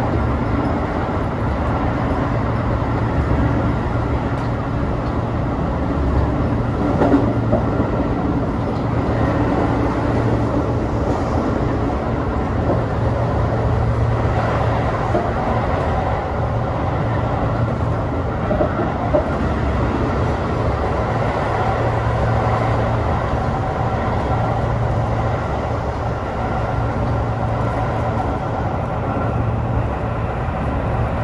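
Tobu 8000 series electric train running along the line, heard from inside the front car: a steady rumble of wheels on rail and running gear. A couple of sharper knocks come through about seven and nineteen seconds in.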